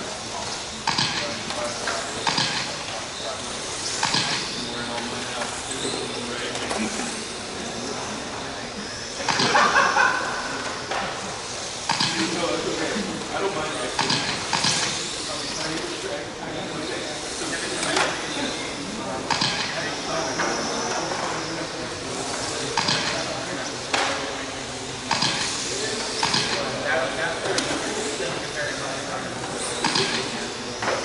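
1/12-scale electric RC pan cars racing laps: thin high motor and gear whines rise and fall as the cars pass, with frequent sharp clicks and knocks.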